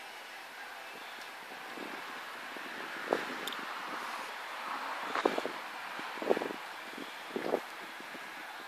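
Electric sectional garage door closing under its motor, a steady running noise with a few knocks as it lowers.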